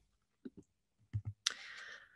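A few faint computer clicks as the presentation slide is advanced, then a short soft hiss near the end.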